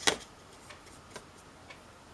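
A few faint, light ticks about half a second apart over quiet room tone, as a water brush pen is picked up and set to the paper.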